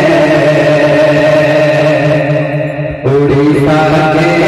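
A man singing a naat, Urdu devotional verse, into a microphone, drawing out long held notes through the hall's loudspeakers. The line fades a little before three seconds in and a new phrase starts right after.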